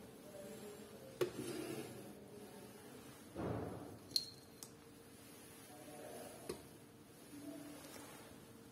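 Light handling sounds at an analytical balance: the sliding glass door of the draft shield and a porcelain crucible being set on the metal weighing pan, heard as a few soft clicks and knocks with a short scrape a little past three seconds in.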